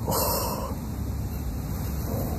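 Old differential gear oil pouring out from under the loosened cover into a drain pan, a wash of splashing that is louder for the first half second and then runs on steadily.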